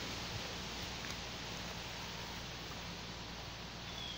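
Steady, quiet outdoor background noise with no distinct events.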